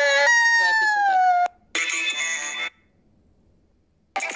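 A toddler's long wailing cry, drawn out and falling in pitch, breaking off about a second and a half in. After it comes a second of a different sound with steady tones, then near silence.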